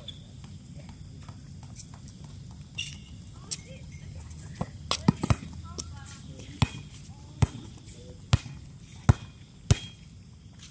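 A volleyball bouncing on a hard court: a string of sharp thuds starting about a third of the way in, the loudest around the middle, then roughly once a second, as the server bounces the ball before serving. Players' voices are faint in between.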